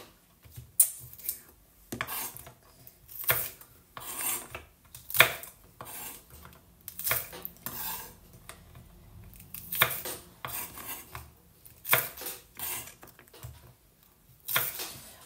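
Chef's knife cutting pea pods on a wooden cutting board: the blade knocks down onto the board at an uneven pace, about once a second.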